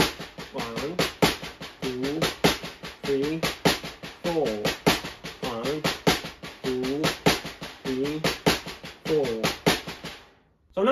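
Drumsticks playing a six-stroke roll on a practice pad set on a snare drum, repeated steadily as a cycle. The sticking is right-right, accented left, accented right, left-left, with the two accents in the middle of the roll.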